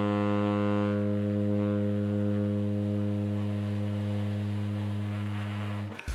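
Tenor saxophone holding one long low note at a steady pitch, a warm-up long-tone exercise. The tone slowly grows softer and darker, then stops at the end.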